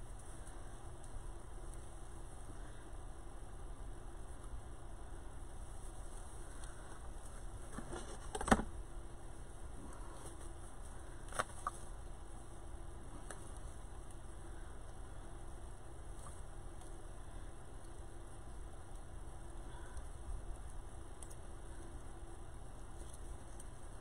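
Handling noise from a deco mesh wreath and its craft supplies being worked on a table, over a steady low hum. A sharp knock comes about eight and a half seconds in, and two light clicks follow about three seconds later.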